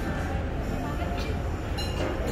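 Steady low rumble with murmuring voices, typical of a busy indoor hall. A short, bright metallic clink rings near the end.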